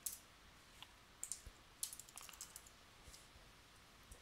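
Faint, scattered keystrokes on a computer keyboard: a handful of separate taps as a word is typed.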